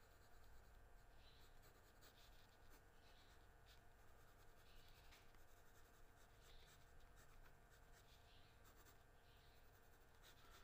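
Faint scratching of a red pencil on grey sketch paper: short shading strokes, a soft rasp every second or two.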